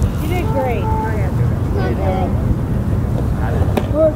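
Wind buffeting the microphone with a steady low rumble, under distant voices of players and spectators calling out. A single sharp knock near the end.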